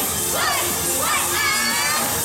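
Several voices shouting and cheering, two shouts rising in pitch, over pop music from a backing track.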